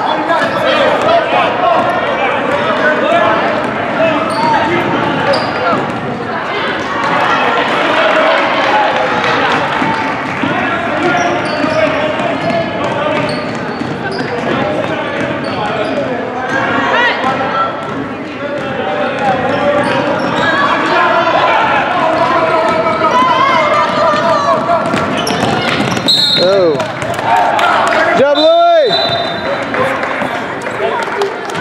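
Basketball being dribbled on a gym's hardwood floor under constant chatter and shouting from spectators, with a short high whistle blast twice near the end as play stops.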